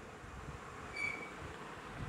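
Quiet pause with faint background room noise, and a short, faint high-pitched tone about a second in.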